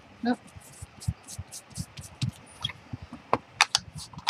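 Ink blending tool dabbed and rubbed over paper on a table: soft, irregular knocks with a few short scratchy swipes in the second half. A brief 'oh' from a woman near the start.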